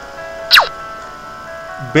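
Light background music with steady held notes. About half a second in, a quick whistle-like tone slides down from high to low.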